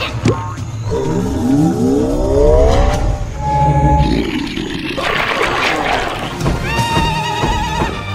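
Cartoon soundtrack of music and sound effects: a rising, swooping voice-like sound about a second in, a short held tone, then music with a wavering held note near the end.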